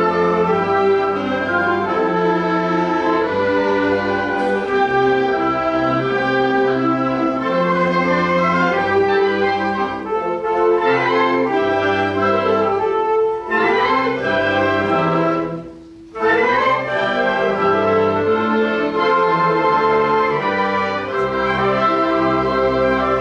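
A school concert band of woodwinds and brass playing sustained chords, with a short break in the music about three-quarters of the way through before the full band comes back in.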